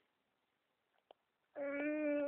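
A baby of about eight months gives one long, steady-pitched vowel sound ("aah") that starts about a second and a half in, after a near-silent stretch with a faint tick.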